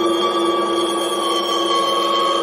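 Progressive psytrance with no drum beat: several held synth tones, one low, one mid and one high, sustained steadily.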